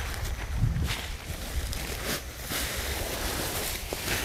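Dry rice husks spilling from a woven plastic sack onto a tarp, a soft hiss with a few short rustles of the sack being shaken out.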